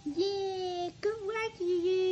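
A voice singing long held notes: one of about three quarters of a second, a short wavering one, then another held note from about one and a half seconds in.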